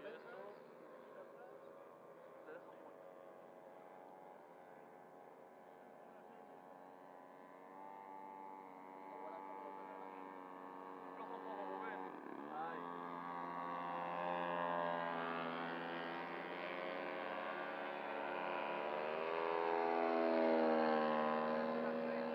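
Engine of a radio-controlled scale Fokker model aircraft in flight: a steady pitched drone that grows steadily louder as the model comes in on a low pass, with a brief drop and rise in pitch about twelve seconds in.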